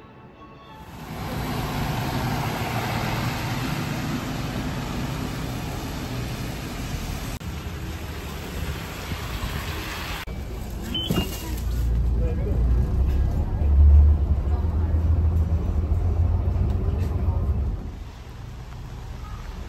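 Wet street in the rain: a steady hiss of rain and traffic on a wet road, then a city bus's engine rumbling low and loud over the last several seconds.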